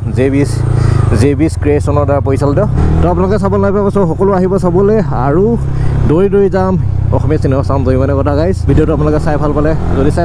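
A man talking continuously over the steady low hum of a motorcycle engine at low road speed.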